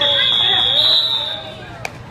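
Referee's whistle: one long, high, steady blast of about a second and a half, with spectators' voices underneath. A single sharp click comes near the end.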